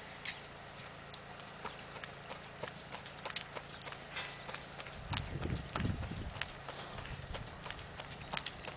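Hoofbeats of a sorrel and white tobiano Paint mare trotting on a dirt arena: a quiet, irregular run of soft clip-clop footfalls, with a brief low rumble about five seconds in.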